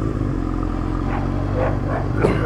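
Honda CBR600F2's inline-four engine running steadily at low revs as the motorcycle rolls slowly, with a dog barking a few times from about a second in.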